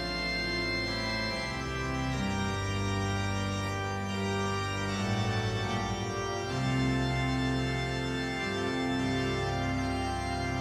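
Organ music: slow, held chords and bass notes that change every second or two.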